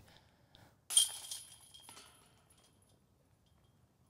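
A disc striking the metal chains of a disc golf basket: one sharp metallic clink about a second in, with a jingling ring that dies away over about a second.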